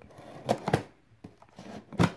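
A knife cutting into a cardboard box: a scratchy scrape, then two sharp clicks about half a second in, then faint light ticks.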